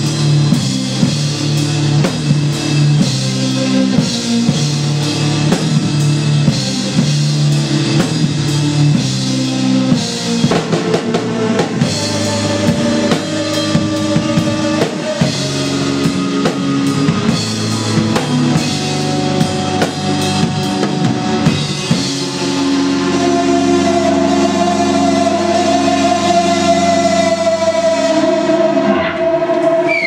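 Instrumental progressive rock band playing live on drum kit, guitars and keyboards, over a repeating low line. Shortly before the end the drums and the low part stop, leaving a single held note ringing as the piece closes.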